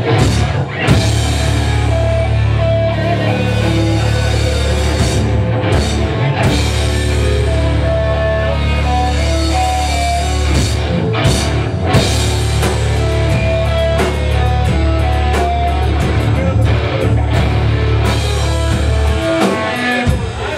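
Metal band playing live and loud: distorted electric guitars with held lead-guitar notes over bass and a drum kit. The band stops just before the end.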